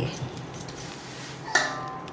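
Faint room noise, then about one and a half seconds in a single metallic clink of cookware with a short ring, as the steel lid is handled for the aluminium pressure cooker.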